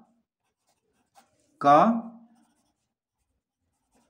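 Pencil writing on notebook paper: a few faint, short scratching strokes. One spoken word, louder than the writing, comes about a second and a half in.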